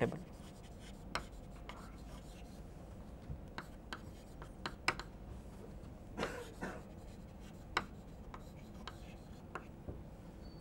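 Chalk writing on a blackboard: faint, scattered taps and short scratches of the chalk as a line of text is written.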